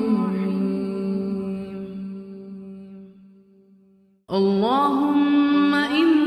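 A man's voice chanting an Arabic dua in a melodic recitation. One long note is held and fades away over about four seconds; after a moment of silence a new phrase enters with a rising slide in pitch.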